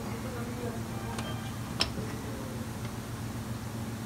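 Steady low hum, with a faint click just after a second and a sharper metallic click a little under two seconds in as the locking pliers holding the hot bolt knock against the elevator chain pin.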